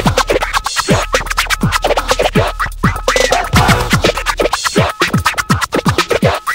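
Miami bass track at 124 BPM in an instrumental break: a hard drum-machine beat with turntable scratching and quick falling pitch sweeps over it.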